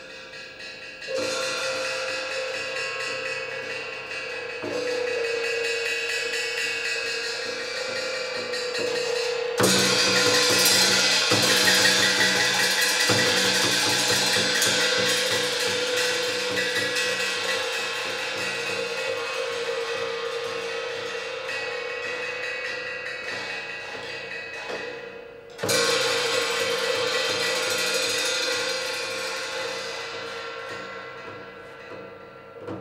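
Peking opera accompaniment: percussion with cymbals and drums over a held melodic note. It enters about a second in, swells again about five seconds in, grows loudest about ten seconds in, fades gradually, and comes in strongly again near the end.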